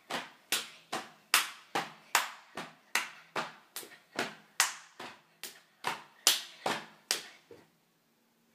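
A child doing jumping jacks, with sharp claps and slaps of hands and landing feet in an even rhythm of about two and a half a second, the louder strokes roughly every other one.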